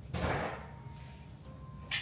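A short soft noise just after the start that fades within half a second, then quiet room tone with a faint steady hum.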